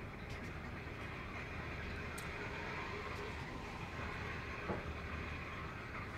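Steady rushing background noise with a low hum, which is taken to be water running through the building's pipe system. A faint click comes near the end.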